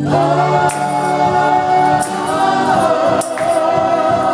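Gospel praise team of women singing a worship song in harmony, holding long notes, over instrumental accompaniment with a steady beat.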